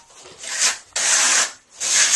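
A plastering trowel scraping Marmorino KS lime plaster, which has sand in it, across a wall in repeated hissy strokes: a short pass, a longer pass, and another beginning near the end.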